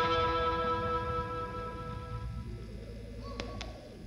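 A distorted electric guitar chord ringing out through the amp and dying away over the first two seconds or so, leaving a low amp hum, with two sharp clicks near the end.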